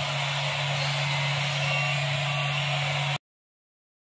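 Steady low hum with an even hiss of room background noise, which cuts off abruptly to complete silence a little after three seconds in.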